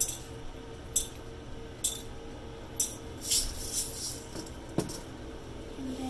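Steel balls being dispensed one at a time into the plastic cuvettes of a Stago Start 4 coagulation analyzer: sharp metallic clicks about once a second, four times, then a short run of clinks and a dull knock near the end.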